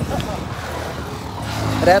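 A motor vehicle going past, its engine and road noise growing louder toward the end.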